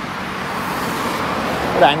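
Road traffic on a highway: passing cars' tyre and engine noise as a steady rush, swelling slightly about half a second in.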